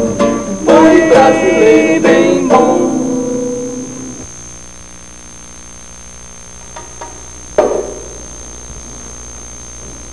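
Acoustic guitar played on stage: a few final strummed chords in the first two or three seconds ring out and fade away by about four seconds. After that only a low background remains, broken by a single sharp knock about seven and a half seconds in.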